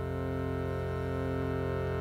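Harmonium drone: one sustained chord held steady, with a slow regular waver in its tone.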